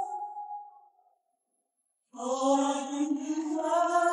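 A cappella gospel singing by a woman: a held sung note fades out within the first second. After about a second of silence, the voice comes back in with a new held note.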